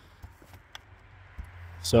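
Faint swish of a snow brush's bristles sweeping loose snow off a car windshield and wiper, with a few light ticks.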